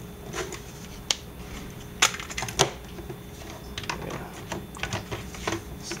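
Plastic clicks and taps of a camera battery being handled and seated in a Canon BG-E9 battery grip's magazine tray. There is a sharp click about a second in, two louder ones about two seconds in, then lighter scattered taps.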